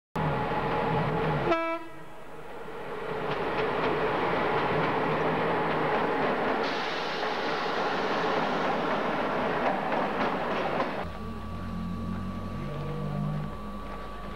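Train horn sounding for about a second and a half, its pitch dropping as it cuts off, then a passenger train running with wheels clattering on the rails. About eleven seconds in the noise eases to a lower, steady rumble with a faint steady tone.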